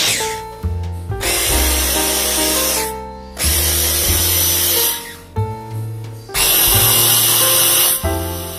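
Electric food chopper motor running in three pulses of one and a half to two seconds each, pureeing watermelon chunks into juice, with background music underneath.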